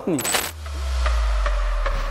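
Edited transition sound effect: a bright metallic swish lasting about half a second, then a deep bass boom that sinks slowly in pitch and holds.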